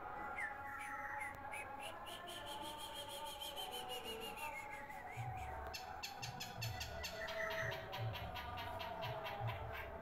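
Long-tailed shrike singing a varied, mimicking song: fast runs of clicking chatter mixed with whistled notes, one held high whistle sliding down partway through.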